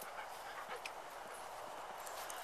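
A dog panting faintly close by, with a few small ticks.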